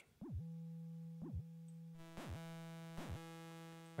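Native Instruments Massive X software synthesizer playing a sustained low note whose pitch is modulated by the exciter envelope: four times, about a second apart, the pitch swoops sharply up, down and back to the steady middle note. About halfway through, the tone turns brighter, with more overtones.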